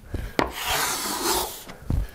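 Bailey-pattern smoothing plane cutting a very light shaving across figured white oak to clean up tear-out. A short knock about half a second in, then a steady hiss of the stroke lasting about a second, and another knock near the end.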